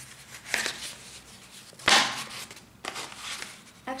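Stiff black card envelope being handled and its flap opened to get at spare shoelaces: short bursts of paper scraping and rustling, the loudest about two seconds in.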